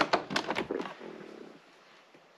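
A quick run of plastic clicks and knocks as a Bluetooth OBD-II dongle is pushed into the car's OBD port under the dashboard, dying away after about a second and a half.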